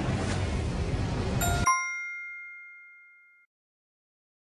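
A rushing noise bed cuts off about a second and a half in, and a bright bell chime dings once and rings away over about two seconds: the quiz sound effect that marks the end of the countdown and the reveal of the correct answer.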